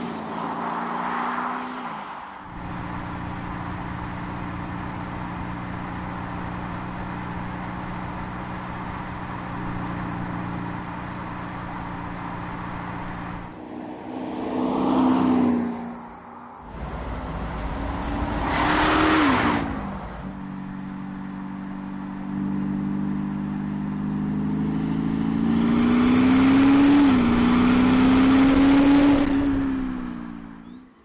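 Audi SQ5's 3.0-litre V6 engine driving and accelerating: a steady engine drone broken by several swells where the engine note rises and then falls as the SUV passes, the longest and loudest rise near the end.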